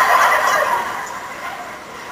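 An audience of women laughing at a joke, loudest at the start and dying away over two seconds.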